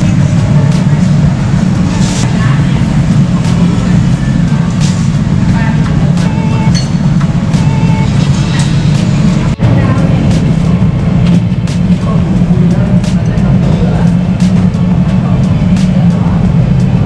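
Background music over a loud, steady low hum, with faint clinks of bowls and utensils from a noodle stall.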